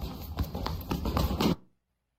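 Quick footsteps of a person running on a hard floor, about four a second, with the handheld camera jostling. They cut off suddenly about a second and a half in.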